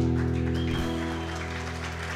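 Final chord of an acoustic guitar ringing out and slowly fading, ending the song. A small audience begins to applaud about half a second in.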